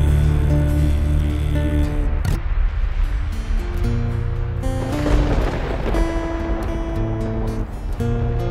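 Acoustic 12-string guitar playing held chords, with a rain-and-thunder sound effect swelling over it twice, about two seconds in and again around five seconds in.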